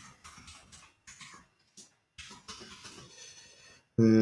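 Computer keyboard typing: short runs of keystrokes with brief pauses between them, heard faintly.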